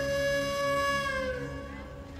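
Soundtrack music: a flute holds one long note over soft low accompaniment, bending down slightly and fading out near the end.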